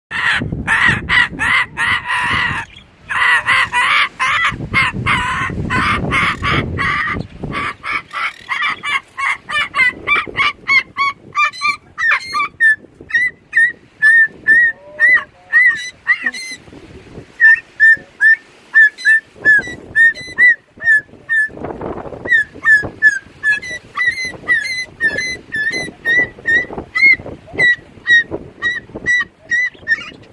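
Umbrella cockatoo calling. It starts with a run of loud, rapid, harsh squawks for the first several seconds, then gives a long series of short, high chirps repeated about twice a second.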